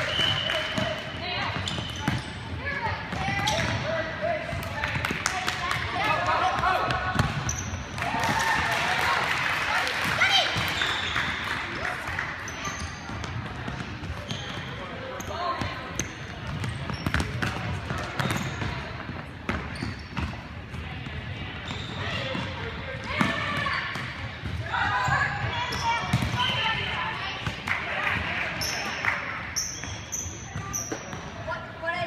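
A futsal ball being kicked and bouncing on a hardwood gym floor, short thuds scattered throughout, with indistinct voices calling out at several points.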